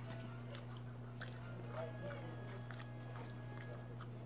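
Eating sounds: chewing and small clicks of a fork against a plate while picking at BBQ chicken, over a steady low hum.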